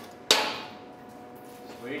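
A single sharp metallic clang about a third of a second in: steel being struck. It is followed by a steady ringing tone that slowly dies away.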